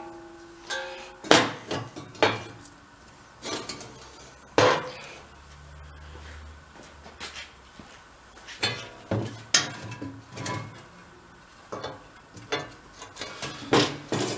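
Steel spiral auger section of an Ariens snow blower being handled and slid onto its auger shaft on a metal workbench: scattered metal knocks and clinks, several ringing briefly.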